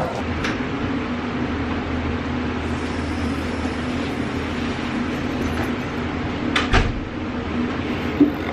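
Steady low hum of indoor room noise, with a short sharp knock about seven seconds in.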